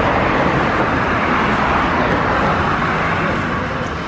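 Road traffic noise from a passing vehicle: a steady rush that swells and then slowly fades.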